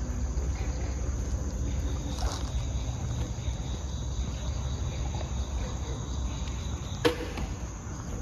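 Crickets chirping steadily at night over a low rumble, with one sharp click about seven seconds in.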